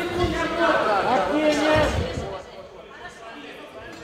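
Raised voices for about two seconds, then a quieter stretch of background noise.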